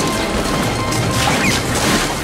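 Loud crashing and smashing film sound effects over music.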